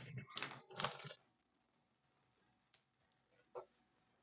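Crinkling and scratching of plastic shrink wrap being picked at and torn off a cardboard trading-card box, in a few quick bursts during the first second. Near the end there is only a faint click and one short blip. The wrap is stubborn and does not come off easily.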